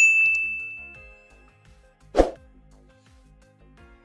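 A bell-like ding from a subscribe-button animation's notification bell, ringing out at the start and fading away over about a second and a half. About two seconds in, a short soft pop follows, with faint background music underneath.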